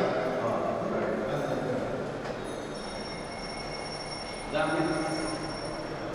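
Indistinct voices of several men talking in a large, empty hall, with a faint steady high-pitched whine underneath; a voice comes in louder about four and a half seconds in.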